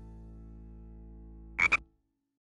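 Cartoon frog sound effect: a quick double croak near the end, over a faint low held tone left from the background music.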